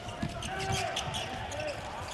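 Live handball court sound: the ball bouncing on the hard court as players dribble and pass, with players' voices calling out in the hall.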